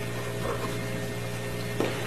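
A steady low electrical-type hum with faint hiss: background room noise under the recording, with no distinct event.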